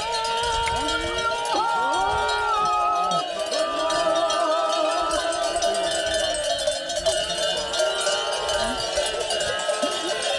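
Many sheep bells jangling continuously as a large flock of sheep walks along, with sheep bleating throughout.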